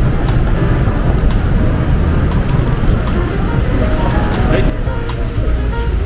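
Steady road traffic rumble of a city street, with music over it and faint voices.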